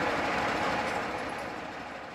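Steady outdoor street background noise, fading out gradually.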